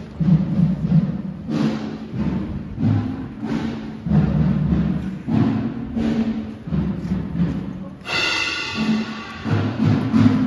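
Deep drums played live, with heavy, reverberant strokes about once a second in an uneven pattern. A sustained pitched tone sounds over them near the end.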